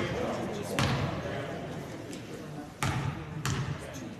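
Basketball bouncing on a hardwood gym floor, three separate bounces with a ringing echo from the large hall, as a shooter dribbles at the free-throw line.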